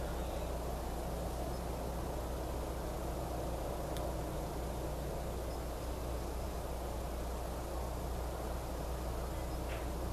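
Steady low hum and hiss of room tone, with one faint click about four seconds in.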